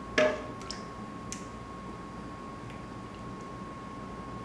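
A small metal cup knocks sharply once against a stainless steel mixing bowl while scooping batter, followed by two lighter clinks. A faint steady high hum runs underneath.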